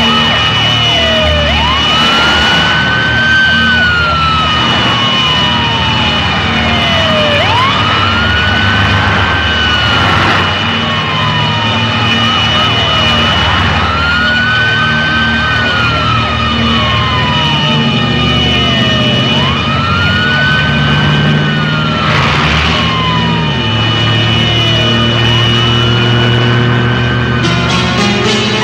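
Ambulance siren wailing with a quick rise in pitch then a long slow fall, repeating about every six seconds, over background film music.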